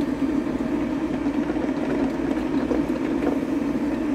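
A drip coffee maker brewing, with a steady, even noise throughout.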